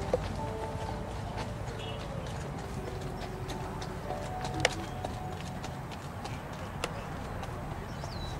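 A dressage horse's hoofbeats on the arena footing during a Grand Prix test, with short sharp clicks scattered through, the loudest about halfway in. Faint music plays in the background.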